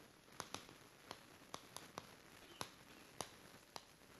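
Faint chalk on a chalkboard as words are written by hand: a string of short, irregular clicks and taps, about two or three a second.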